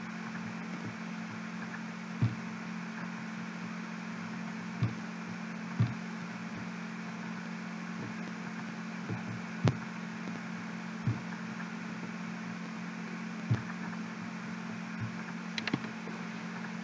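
Steady low hum and hiss from a camera's built-in microphone, broken by a scattering of short, faint clicks and knocks from the camera being handled to switch off its autofocus.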